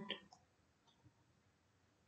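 Near silence, with a couple of faint clicks about a second in from a computer mouse.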